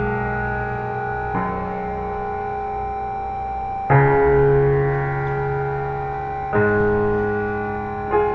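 Slow, held chords played on an electronic keyboard, each struck and left to ring. A new chord comes in about every two and a half seconds, three times.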